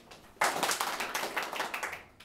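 A group of people clapping their hands, starting abruptly about half a second in as a quick, uneven patter of many claps.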